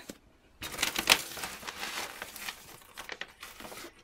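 A bag of turtle food crinkling and rustling as a hand handles it, starting about half a second in, loudest just after a second in, and trailing off near the end.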